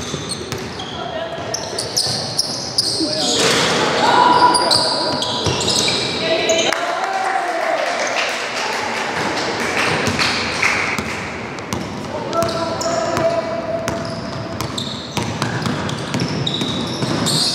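Basketball game sounds echoing in a sports hall: sneakers squeaking on the wooden floor, the ball bouncing, and players' voices calling out.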